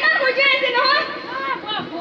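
A high-pitched voice through a microphone and stage PA, drawn out and wavering rather than spoken in short words, fading out shortly before the end.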